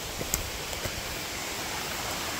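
Steady rushing of a mountain stream, with a few faint knocks in the first second.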